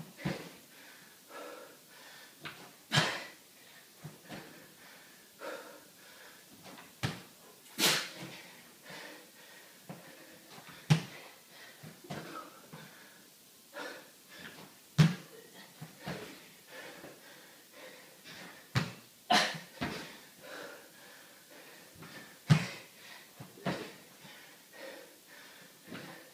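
A person doing squat thrusts on a hardwood floor: sneakered feet landing with a thud every few seconds as they jump back and in, with hard breathing between the landings.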